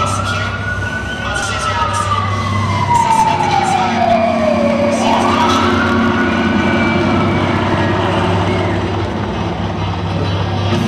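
Siren wailing, likely a sound effect over an arena PA: its pitch rises quickly, falls slowly over about four seconds, then rises again about five seconds in. Crowd noise and a steady low hum lie underneath.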